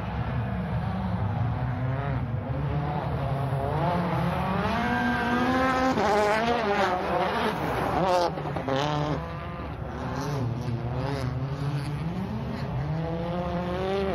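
A World Rally Car's 1.6-litre turbocharged four-cylinder engine revving hard, its pitch climbing and dropping again and again with quick gear changes. It is loudest about halfway through, then eases back.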